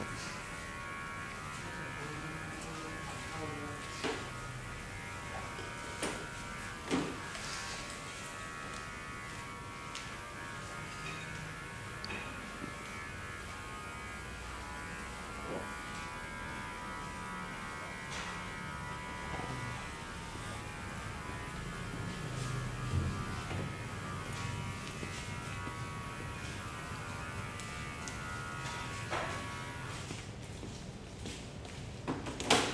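A small electric motor buzzing steadily throughout, in the way of an electric shaver or hair clipper running, with a few short clicks early on.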